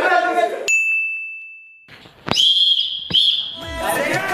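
A single clear ringing tone that starts suddenly and fades away over about a second. After a short gap comes a shrill, wavering whistle about a second long.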